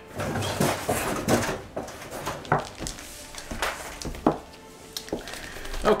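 Plastic bag rustling and packaging knocking as a framed canvas print in a plastic sleeve is lifted out of its cardboard box: a continuous rustle at first, then several separate sharp knocks.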